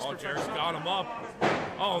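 One heavy thud about one and a half seconds in, from a wrestler's body hitting the canvas of a wrestling ring, with men's voices talking over it.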